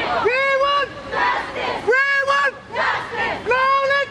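Crowd of protesters chanting slogans in call and response. A single loud, high-pitched shouted call comes about every second and a half, and the crowd's voices answer together between the calls.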